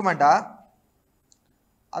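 A man speaking Tamil for about half a second, then a pause of about a second with one faint click before his speech resumes at the end.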